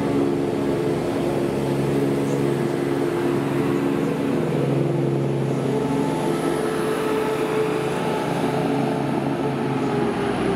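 Class 170 Turbostar diesel multiple unit's underfloor diesel engines running steadily under power as it departs past the platform, dropping in pitch near the end as the rear car goes by.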